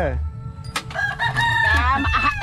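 A rooster crowing once: one long call of about a second that rises at the start and falls away at the end.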